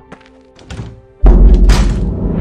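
Faint music, then a little over a second in a sudden, very loud deep thud that opens straight into a loud, dense soundtrack effect.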